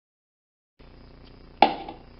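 Silence at first, then faint room noise and a single sharp knock with a short ring about one and a half seconds in: a small metal lock part or tool set down on a wooden workbench.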